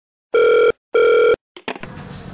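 Telephone ringback tone heard down the line: one double ring, two steady beeps of about 0.4 s each with a short gap, in the Indian double-ring pattern. A few short clicks follow near the end as the call is picked up.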